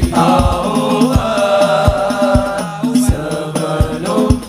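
Live sholawat music: a sung, chant-like melody over hadroh percussion, with a drum struck about every half second to three-quarters of a second.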